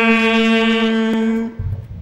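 A long musical note held at one steady pitch, rich in overtones, dying away about a second and a half in. A faint low rumble follows it.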